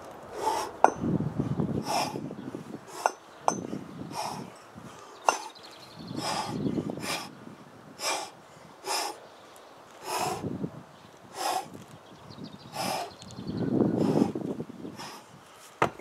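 A man breathing hard and rhythmically under heavy kettlebell work: short, forceful exhalations about once a second while he cleans and presses two 24 kg kettlebells without a break. A few sharp clicks come in the first half, and a heavier thud near the end as the kettlebells are set down on the sand.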